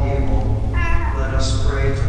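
A voice singing in long, held notes over a steady low drone.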